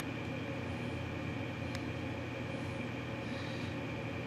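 Steady background hum of room machinery, even and unchanging, with a faint click about two seconds in.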